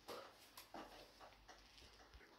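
Near silence: faint room noise in a pause between spoken phrases.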